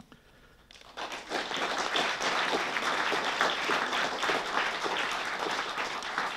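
Audience applauding, beginning about a second in after a brief silence and easing off near the end.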